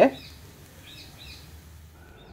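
A voice breaks off at the start, followed by quiet background noise with a few faint high chirps.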